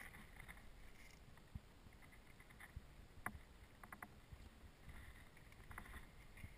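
Near silence: faint low rumble of outdoor background, with a few soft clicks a little past halfway.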